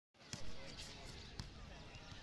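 Two sharp thumps of a football striking a hard court surface, about a second apart, the first the louder, with faint voices in the background.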